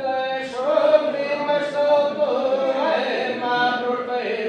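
Sardinian canto a tenore: four unaccompanied men's voices singing close harmony, with the deep, throaty bassu and contra voices under the lead. The chord is held with slow slides in pitch.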